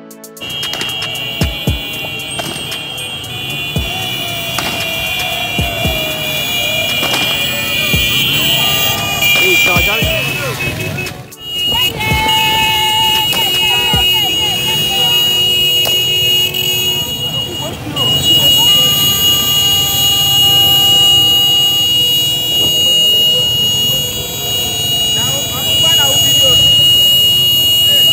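Street rally noise: many voices and music mixed with motorbikes and other passing vehicles, with a steady high-pitched tone held over it. The sound dips and cuts off briefly about eleven seconds in, then resumes.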